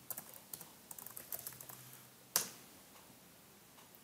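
Computer keyboard typing: a quick run of soft key clicks, then one louder click a little past halfway.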